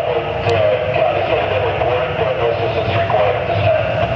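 A boat's engines running steadily underway, with a constant low throb and a wavering drone.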